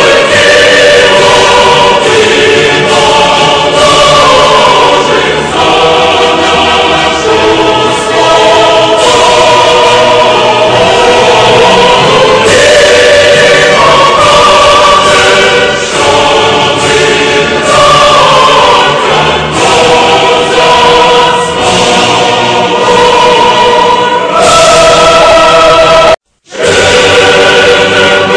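Choral music: a choir singing long held notes and chords that change every second or two, loud and steady throughout.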